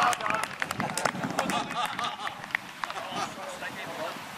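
Indistinct shouts and calls from players on a grass football pitch, with scattered short knocks in between.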